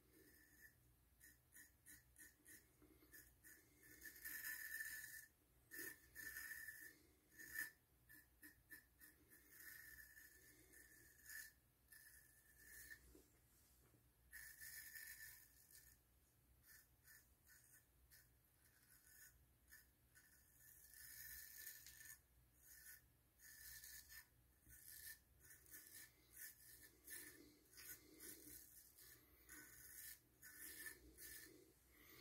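Faint scraping of a straight razor cutting stubble through shaving lather, in many short strokes that come in clusters.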